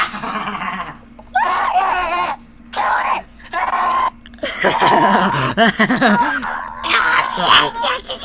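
Voices laughing and shouting in loud bursts with short gaps between them, over a faint steady tone.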